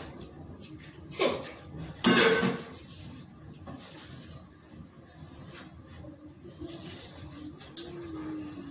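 Metal cooking pots and lids clanking as they are handled and set down on a gas stove, with two sharp knocks about one and two seconds in, the second the loudest, then lighter clatter.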